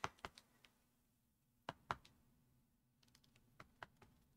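Faint taps and clicks of a clear acrylic stamp block being tapped onto an ink pad and pressed onto cardstock: a few at the start, two about two seconds in, and a quick run of light ticks near the end.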